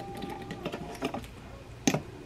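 Light clicks of a stainless-steel and plastic triple slow cooker being handled and its power cord unwrapped, with one sharp knock near the end.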